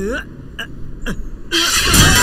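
Film sword-fight sound: a few soft knocks, then about one and a half seconds in a sudden loud metallic clash of swords with a ringing, scraping tail.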